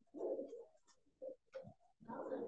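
A bird cooing faintly in a few short, low calls, the longest in the first half second.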